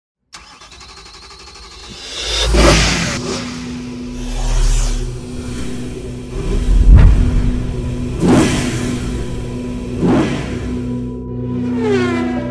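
Intro sound design of car engine revs and passing sweeps repeating every couple of seconds over a steady low drone. The loudest moment is a sharp hit about seven seconds in, and a falling tone comes near the end.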